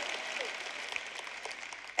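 Audience applause, fading away.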